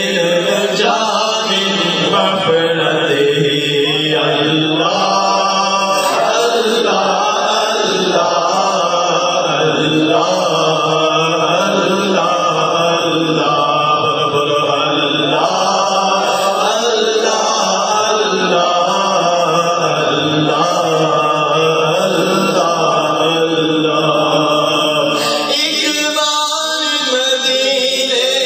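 A boy reciting a naat, a devotional Urdu poem, in a sustained chant-like melody without instruments.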